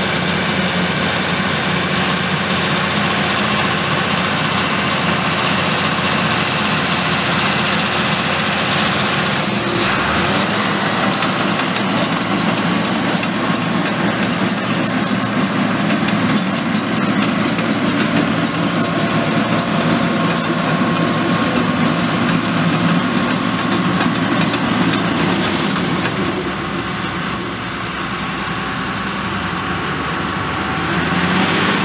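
Diesel engine of a Caterpillar crawler bulldozer running steadily while spreading drainage gravel. From about ten seconds in, a rapid clicking rattle of tracks and rock joins it, and the sound eases off a little near the end.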